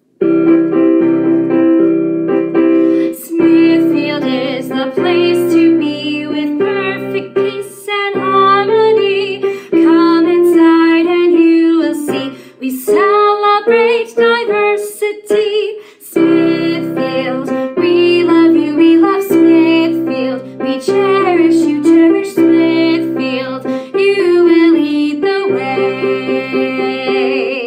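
A school song played on an electric piano, with a woman singing the melody over keyboard chords. It starts abruptly and has a brief pause about two-thirds of the way through.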